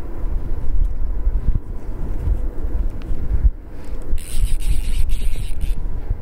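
Wind buffeting the microphone with a gusting low rumble. About four seconds in comes a high-pitched buzz lasting under two seconds.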